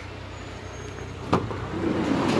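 VW Crafter van's cargo door latch clicking open once, about a second and a half in, with the door starting to open near the end, over a steady low hum.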